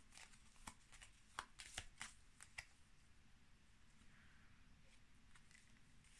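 Faint handling of tarot cards: a few soft, short clicks and slaps as cards are shuffled and one is drawn, spread over the first half.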